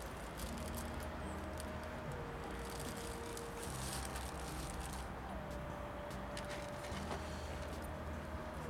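Small rustles and clicks of hands handling seedlings and a plastic bag while planting them into a plastic pot, over steady background noise. A faint whine in the background holds its pitch and then drops quickly, about two seconds in and again about five seconds in.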